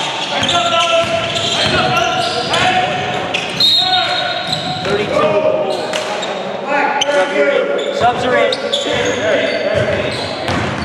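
Basketball game sounds: a ball bouncing on a hardwood gym floor, with players' voices calling out, echoing in a large hall.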